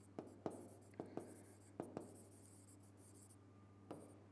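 Pen writing on a board, faint: a quick run of sharp pen-tip taps and scratchy strokes over the first two seconds, a softer scratching after that, and one more tap just before the end.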